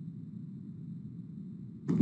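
Steady low background hum with no distinct events; a man's voice begins just before the end.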